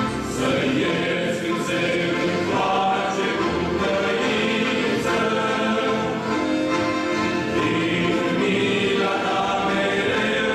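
A male vocal ensemble singing a hymn in several parts, accompanied by an accordion, at a steady level.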